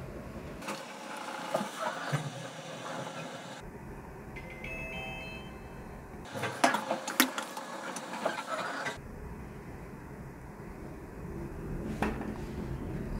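Inside a Hyundai elevator car: a steady low running rumble, with rustling and sharp clicks twice, the loudest in the second half. In between, a short electronic chime of several stepped tones sounds about four to six seconds in.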